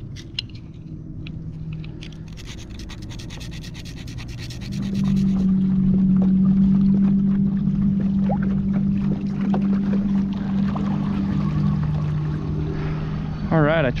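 Light scraping of a small sharpener on a fishing hook point, then about five seconds in a steady low motor hum starts and keeps going, dropping a little in pitch near the end.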